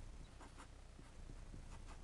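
Marker pen drawing on paper: a few faint short strokes, a pair about half a second in and another near the end.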